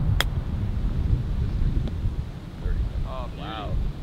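A golf club striking the ball on a short chip shot, a single sharp click just after the start, over low wind rumble on the microphone.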